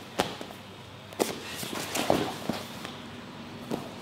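Bare feet stepping and shuffling on a grappling mat, with a few sharp thuds as two grapplers go through a takedown and land on the mat.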